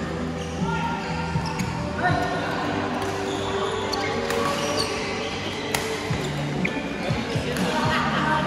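Badminton rackets striking a shuttlecock in a doubles rally: a handful of sharp hits, roughly a second or more apart.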